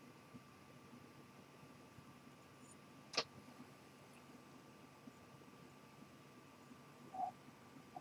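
Near silence: room tone with a faint steady whine, one short click about three seconds in and a brief soft sound near the end.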